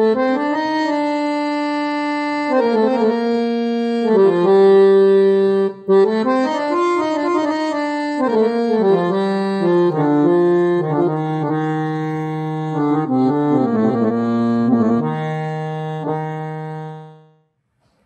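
Harmonium playing a slow melodic passage of sustained notes that move stepwise up and down, then stopping shortly before the end.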